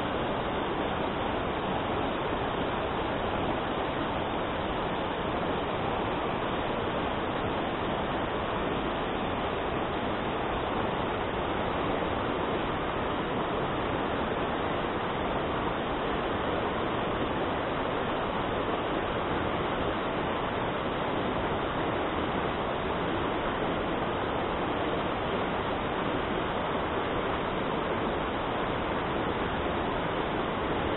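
Mountain stream rushing over rocks in white-water rapids, a steady, unchanging wash of water noise.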